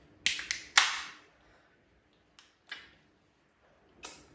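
Aluminium beer can being cracked open: a couple of clicks from the ring-pull tab, then a sharp crack with a short hiss of escaping carbonation that fades within about half a second. Two faint ticks follow later.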